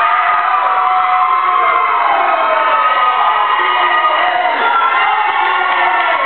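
A crowd cheering and yelling in celebration, many voices overlapping at a steady, loud level.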